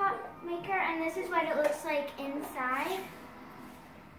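A child's voice talking for about three seconds, with the words unclear, then quieter room sound.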